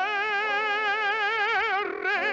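Operatic tenor voice holding one long sung note with a wide, even vibrato.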